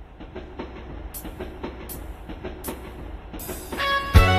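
Train sound effect in the backing track of a trot song about a railway bridge: wheels clicking over rail joints, about four clicks a second over a low rumble. It fades in and grows steadily louder, and instruments come in near the end.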